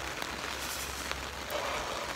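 Rain falling on an umbrella overhead: a steady hiss with a few faint drop ticks, over a low steady rumble.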